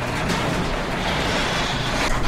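Loud, steady rumbling sound effect over a low hum, like a heavy metal shutter or machinery, from a logo intro.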